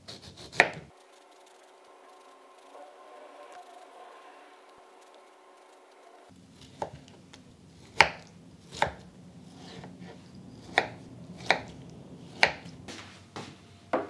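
Small knife cutting and peeling a golden kiwi on a plastic cutting board: sharp, irregular knocks of the blade on the board, about one a second, through the second half. Before that, a few seconds of faint steady hum with no knocks.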